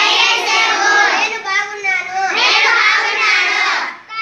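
A group of schoolchildren singing together in unison, loud and continuous, with many voices overlapping, a classroom rhyme in Urdu.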